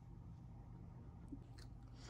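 Near silence: a steady low room hum with a faint tick or two of handling.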